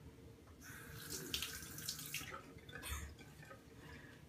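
Bathroom sink tap running for about a second and a half, water splashing into the basin, followed by a couple of small knocks.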